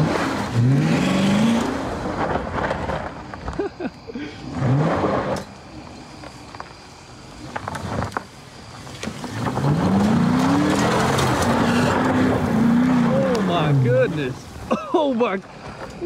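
2018 Dodge Charger Pursuit's engine revving hard as the car spins donuts in loose dirt with traction control off, its wheels spinning and throwing dirt. Two short rising revs come about half a second and four and a half seconds in, then a long rev climbs and falls from about ten to fourteen seconds.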